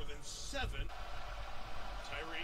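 Speech: a TV football broadcast commentator talking, low in the mix.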